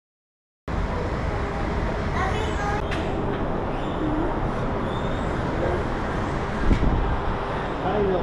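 Shopping-mall ambience cutting in abruptly about a second in: a steady low rumble with faint background voices.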